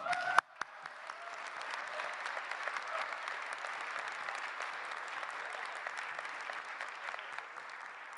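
Audience applause that builds over the first second and then holds steady, with a sharp click just after the start.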